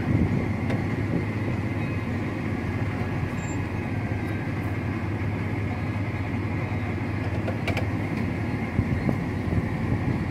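A vehicle engine running steadily at low revs as it creeps along, heard from inside the cab, with a faint steady high hum above it.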